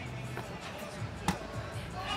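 A cornhole bag landing on the wooden board with one sharp thud just over a second in, over faint background music.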